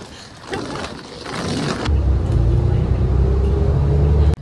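Steady low engine rumble heard from inside a moving shuttle bus, starting suddenly about two seconds in. Before it, only fainter outdoor background noise.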